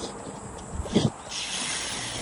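Running footfalls and wind noise on a phone microphone carried by a runner: two dull thumps a little under a second in, then a louder rush of hiss near the end.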